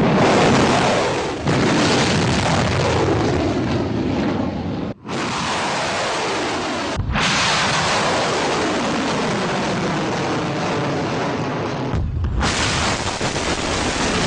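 An explosion, then the roar of anti-ship missiles' rocket motors at launch, in several shots that cut off abruptly about five, seven and twelve seconds in.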